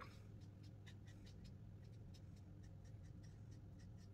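Faint scratching of a black felt-tip marker on paper: a run of short, quick strokes drawing in the hair of a figure.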